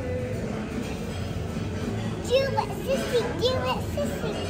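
A young child's high voice vocalising in a sing-song, several short rising-and-falling notes from about halfway in, over a steady restaurant din with background music.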